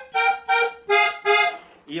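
Diatonic button accordion playing four short notes slowly, two repeated notes and then two lower ones, each cut off crisply by the bellows.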